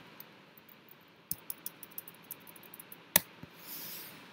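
Computer keyboard keys clicking as code is typed and deleted: a quick run of light key clicks about a second in, then one sharper, louder click past the three-second mark, with a soft hiss near the end.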